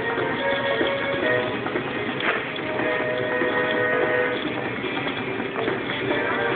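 Music playing steadily, with held notes.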